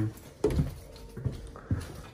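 A few soft, irregular thumps of footsteps on a tile floor, with handheld camera handling noise, while walking through a house.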